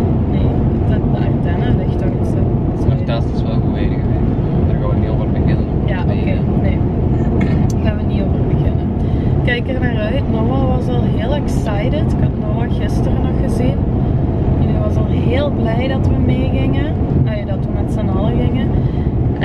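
Steady road and engine noise inside a moving car's cabin. A person's voice rises and falls over it, mostly in the second half.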